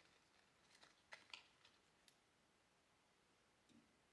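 Near silence, with a few faint, brief clicks and rustles of a folded paper stand being handled about a second in.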